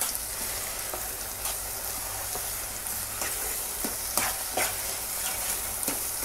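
Mashed potato frying in desi ghee in a non-stick pan, sizzling steadily, while a wooden spoon stirs sugar through it, with a few scattered knocks and scrapes of the spoon against the pan.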